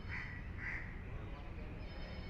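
A bird gives two short, harsh calls about half a second apart, over a steady low outdoor rumble.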